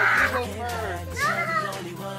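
A child's high-pitched squealing voice, sliding down in pitch and fading in the first half second, with another short squeal about a second and a half in, over background music.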